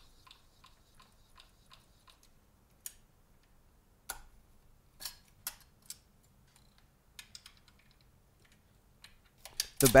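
Faint, evenly spaced ticking from a Minolta SRT101's film rewind crank as the film is wound back into the cassette, followed by a handful of sharper mechanical clicks as the camera back is opened and the camera handled.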